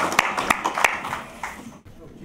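Audience applauding, the clapping thinning out and dying away about a second and a half in.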